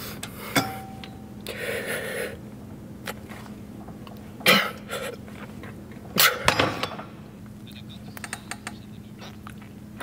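A weightlifter's forceful exhalations and grunts of effort during seated machine rows, loudest about four and a half seconds in and again around six seconds. There are scattered sharp clicks and knocks from the machine, and a low steady hum underneath.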